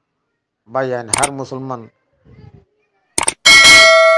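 A man's voice briefly, then near the end a bright bell-like chime starts sharply and rings on in several steady tones. It is a notification-bell sound effect accompanying the subscribe-button animation.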